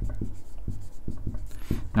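Dry-erase marker writing on a whiteboard: a quick run of short strokes and taps as the letters are formed.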